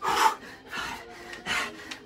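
A man hopping from foot to foot in trainers on a concrete floor: three short rasping bursts about three-quarters of a second apart, the first the loudest, from his shoes scuffing the floor and his hard breathing.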